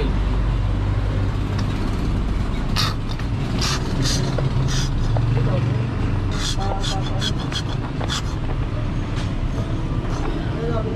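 Hand work on a scooter's rear shock mount: a scatter of short sharp clicks and taps, quickening into a run of them past the middle, over a steady low hum.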